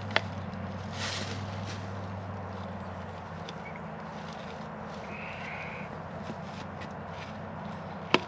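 Low steady hum of an idling Kubota L2502 tractor's diesel engine, with a sharp click just after the start as the metal-plated 2x4 is set against the steel T-post.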